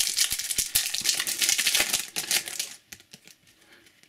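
Foil wrapper of a trading card pack being crinkled and torn open by hand: a dense run of rapid crackles for about three seconds, then only a few faint rustles.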